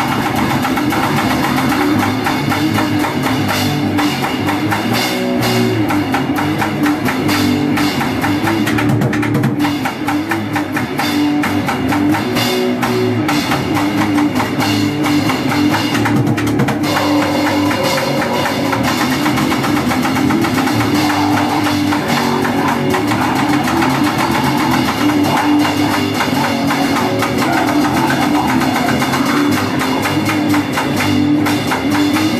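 Grind/crust band playing live: drum kit, distorted electric guitar and bass guitar in a dense, loud, continuous wall of sound, the guitar part changing a little past halfway.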